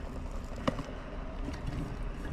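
Boiling water poured steadily from a glass electric kettle into a stainless steel vacuum flask, with a single sharp click under a second in.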